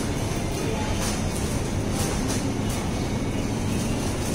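Steady supermarket background noise: the hum of open refrigerated display cases and air handling, with faint store music.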